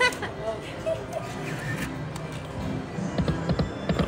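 Dancing Drums video slot machine playing its music and sound effects as the reels spin, over faint casino voices.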